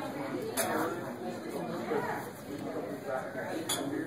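Indistinct background chatter of several voices, with two short sharp clinks, one about half a second in and one near the end.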